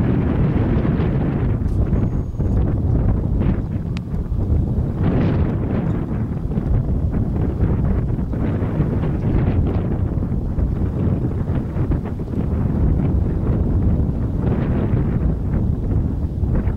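Gusty wind buffeting the camera microphone: a constant low rumble, with gusts bringing surges of hiss about five and fifteen seconds in.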